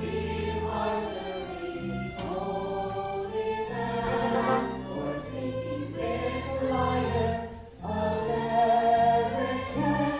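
A stage-musical ensemble singing together over a pit orchestra, with sustained chords and a bass line moving note by note. There is a brief drop in level a little before the end.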